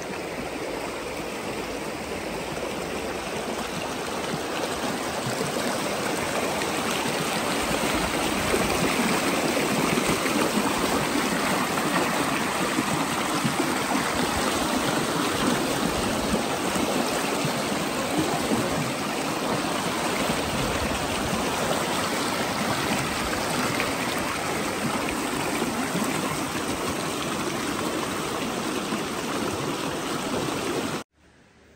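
Shallow rocky mountain stream rushing and splashing over stones, a steady noise of running water that swells louder about five seconds in and holds.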